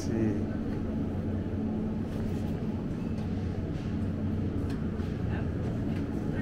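Supermarket ambience: the steady low hum of open refrigerated display cases, with indistinct voices of other shoppers and a few small clicks.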